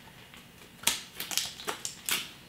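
Klein all-purpose electrician's scissors snipping through a piece of cardboard: a sharp snip about a second in, followed by several lighter cuts.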